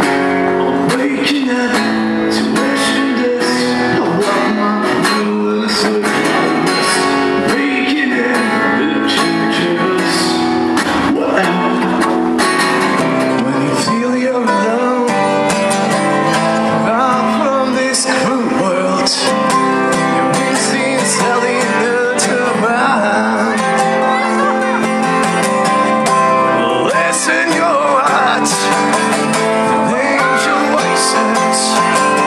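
A man singing with a strummed acoustic guitar.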